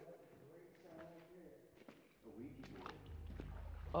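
Faint, indistinct voices of people talking. A low steady rumble comes in about halfway through.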